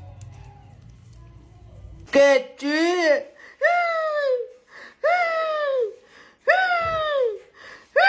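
A faint low hum, then about two seconds in a voice starts a series of about five loud, long vocal cries, each sliding up and then down in pitch.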